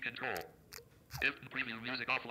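Android TalkBack screen reader's fast synthetic voice announcing on-screen controls in two quick bursts, the seek bar and then the 'My Music' button, as the accessibility focus moves.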